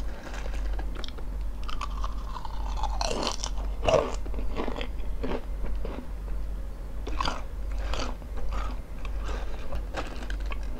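Close-miked crunching and chewing of potato chips in the mouth: a run of sharp, irregular crunches that starts about three seconds in and is loudest about a second later.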